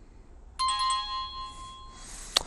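Phone ringtone: a bright electronic chime of several steady tones starts suddenly about half a second in, rings loudly for about a second and then fades.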